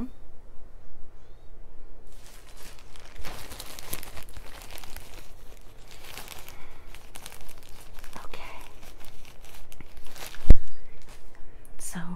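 Irregular crinkling and rustling handling noises close to the microphone, with one sharp, loud click about ten seconds in.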